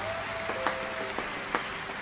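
Studio audience applauding on a TV broadcast, a steady even clatter of many hands, with a faint held musical tone under it.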